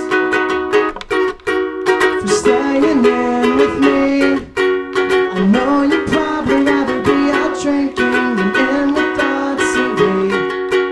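Live band music: a ukulele strummed steadily with the band, with a melody line bending over the chords.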